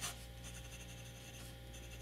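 Number six steel Bock double-broad fountain pen nib scratching faintly across paper as a word is written in a few strokes.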